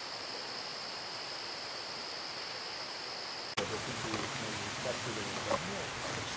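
Crickets calling in a steady, continuous high trill over a background hiss. It cuts off suddenly with a click about three and a half seconds in, giving way to hiss and faint voices.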